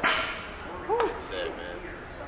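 Two sharp smacks, one at the start and one about a second in, with short voice sounds between them.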